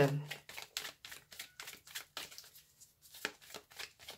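A deck of oracle cards being shuffled by hand: a rapid run of short, soft card clicks as the cards slide and tap against each other.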